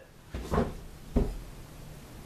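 Two knocks, about three-quarters of a second apart, the second sharper and louder.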